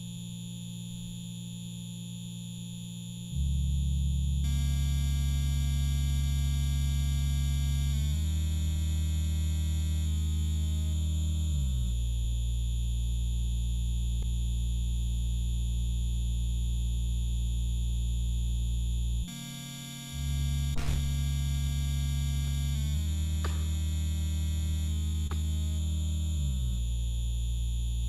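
Loop station beatbox performance: layered vocal loops with a deep bass and melody notes held and changing in steps, with hardly any beat. The bass cuts out for about a second, about two-thirds of the way through, and comes back.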